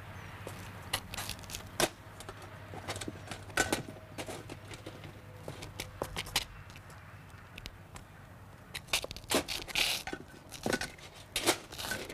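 Scattered clicks, knocks and rustling of someone rummaging through a car, searching for its warning triangle. A low steady hum runs underneath.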